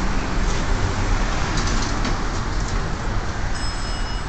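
Steady low rumble of traffic and garage noise. Near the end the hydraulic elevator's doors slide open, with a thin high whine.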